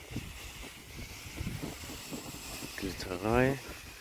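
Handheld fountain firework burning with a steady hiss as it sprays sparks, with wind buffeting the microphone. A short spoken word near the end is the loudest sound.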